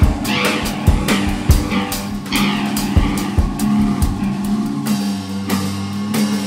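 Improvised instrumental rock: a drum kit hitting in a loose, irregular pattern under a held low drone, with swooping high electronic tones from guitar and keyboards.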